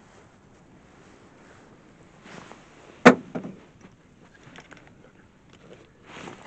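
A single sharp knock about three seconds in, close and loud, with a short rattling tail, after some faint handling rustle.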